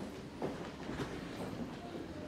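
Irregular knocks, footsteps and shuffling of performers moving and settling on a wooden stage between pieces, with no music playing.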